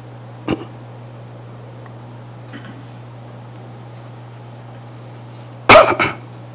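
A man coughs once, short and loud, near the end, after a few seconds of quiet with only a steady low hum. There is a light click about half a second in.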